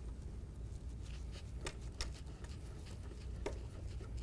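Faint handling noise as twist knobs on a trike's canopy poles are turned loose by hand: a few light clicks over a low steady hum.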